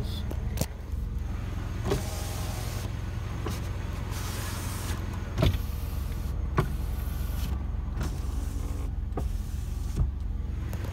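1995 Buick LeSabre's 3.8-litre V6 idling steadily, heard from inside the cabin, while a power window motor runs briefly twice, about two and four seconds in. Several sharp clicks are scattered through it.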